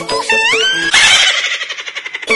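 Upbeat background music with sliding guitar-like notes, then about a second in a loud, high, rough scream that slides slightly down in pitch.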